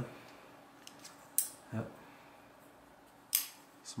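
Chris Reeve Sebenza folding knife with a titanium frame lock, its blade being worked by hand: two sharp metallic clicks about two seconds apart, with a few faint ticks before them.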